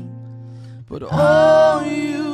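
Contemporary worship band music in a passage without lyrics: a soft, steady, sustained low note, then about a second in an acoustic guitar strum with a louder held note over it.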